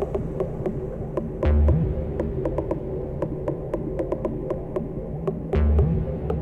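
Dark techno track: a low, throbbing bass drone under a steady tick about four times a second. A heavy low bass hit comes twice, about one and a half seconds in and again near the end.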